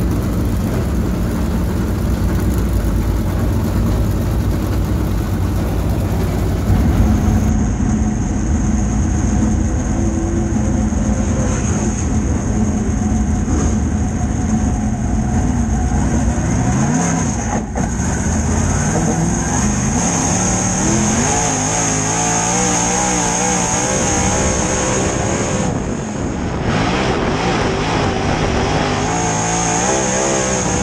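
Dirt super late model race car's V8 engine running, first heard from outside as the car rolls along. After a cut about seven seconds in it is heard from inside the cockpit, where its pitch rises and falls over and over as the throttle is worked around the track, with a steady high whine.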